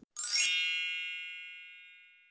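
Sparkling chime sound effect: a quick upward run of bright bell-like tones that then ring together and fade away over about two seconds.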